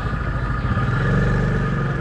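A motorbike engine running close by, swelling louder about half a second in and dropping back near the end, over steady market-lane background noise.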